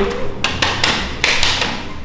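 Folded paper slips being handled and unfolded, crinkling in three or four short bursts.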